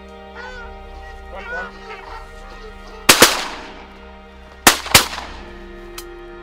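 Geese honking in flight, then four loud shotgun shots fired in two quick pairs, one pair about three seconds in and the next about a second and a half later.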